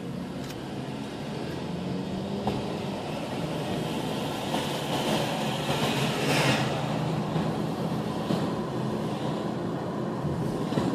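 Car engine hum and road noise heard from inside the cabin, growing gradually louder as the car picks up speed along the street. A brief rush of noise rises and falls about six seconds in.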